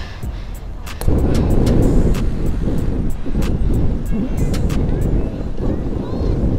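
Wind buffeting a bike-mounted camera's microphone while riding, with road rumble; it gets much louder about a second in. Sharp clicks and rattles from the bike come through over it.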